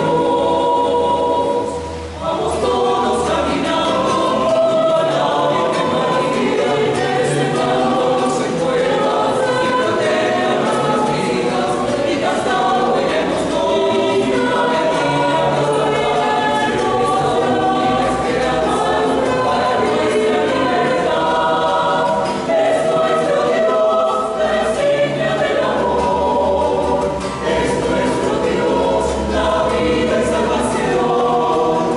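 Mixed choir singing a sacred choral piece in several parts, with a brief break in the sound about two seconds in, accompanied by a small guitar.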